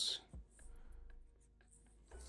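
Faint scratching of a felt-tip marker drawing short strokes on paper, with a soft knock about a third of a second in.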